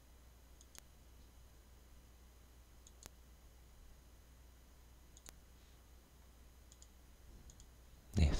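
Near silence with faint computer mouse clicks: three clicks about two seconds apart, each with a softer tick just before it, and a few softer ticks near the end, over a faint low hum.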